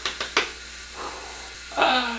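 Soap-lathered hands squishing together in a few quick wet strokes, over the steady hiss of a running shower. A voice starts near the end.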